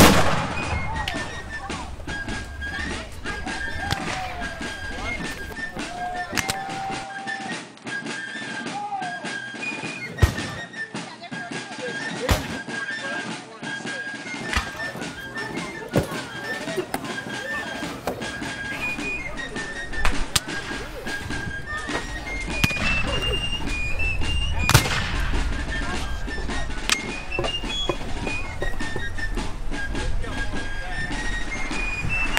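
A muzzle-loading field cannon firing a blank charge right at the start, a single loud boom. Then about five scattered rifle-musket shots at irregular intervals, under a high, stepped tune like a fife playing on.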